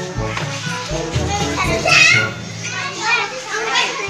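Young children's high voices calling and shouting as they play, loudest with one high cry about halfway through, over background music with held bass notes.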